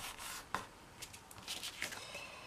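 Stiff blue card stock being handled and refolded by hand: faint rubbing and rustling of paper, with a few sharp crisp clicks.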